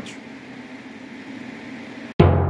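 Steady whir of a GPU mining rig's cooling fans running at high speed.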